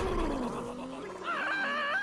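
Cartoon character voices making drawn-out, wordless cries: a low voice sliding slowly down in pitch, then a higher wavering cry in the second half.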